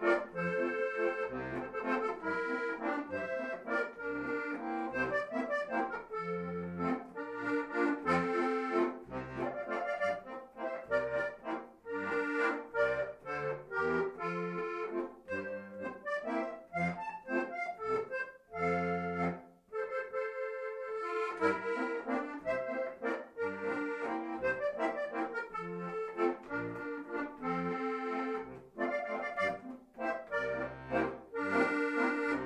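Instrumental alpine folk dance tune played on a Lanzinger helicon-bass button accordion: a chordal melody over regular, separate bass notes, the bass dropping out for a moment past the middle.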